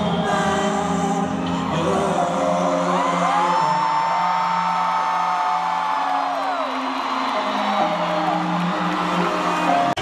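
Concert music played over an arena sound system: slow, long-held tones with a high note that rises, holds and falls away through the middle. Over it, the crowd whoops and screams.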